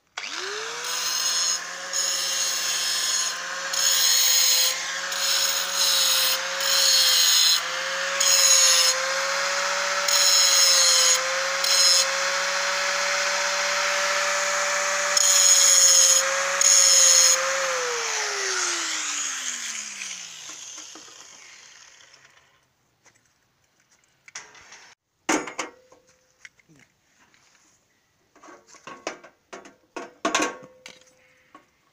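Angle grinder starting up and running with a steady whine, grinding on a steel gate frame in a series of short, louder passes. It is switched off after about eighteen seconds and winds down with falling pitch, followed by a few sharp metallic clinks near the end.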